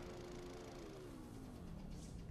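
Film projector motor humming steadily, then winding down as it is shut off, its hum sliding lower in pitch through the second half.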